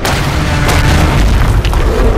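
A deep, loud boom that starts suddenly, an explosion or impact sound effect, over music.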